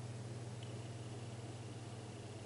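Room tone: a steady low hum under an even hiss. A faint, thin high tone comes in about half a second in.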